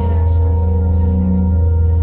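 Keyboard pad playing a soft held chord: steady sustained tones with a strong low note underneath.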